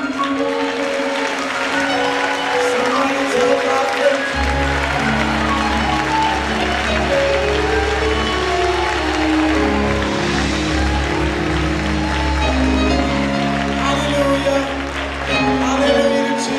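Live gospel music: a band with sustained chords and voices singing and calling out, under applause and clapping from the choir and congregation. A deep bass note comes in about four seconds in and holds under the rest.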